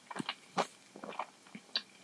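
Close-miked eating sounds: short, wet clicks and smacks of chewing instant ramen noodles, a few each second, with chopsticks stirring noodles in the soup broth.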